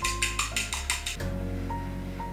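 Background music with steady notes and a bass line; over it, about seven rapid clicks a second from a fork beating egg and milk in a bowl for an egg wash, stopping just over a second in.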